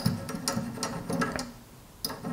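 The brass top of a boiler feed line's pressure reducing valve being tightened down by hand onto its threaded stem, with light, quick metallic clicking and rattling that dies away after about a second and a half.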